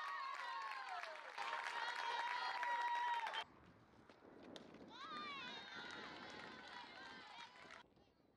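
High-pitched voices of softball players and fans shouting and cheering, with long held calls. The shouting breaks off suddenly about three and a half seconds in, then softer yelling follows.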